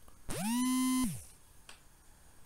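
A synthesized tone sound effect: a pitched hum that glides up, holds steady for about half a second, then drops away about a second in.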